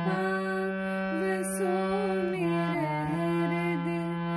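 Harmonium playing a slow shabad melody over held lower notes, the reeds sounding steadily as the chords change every second or two.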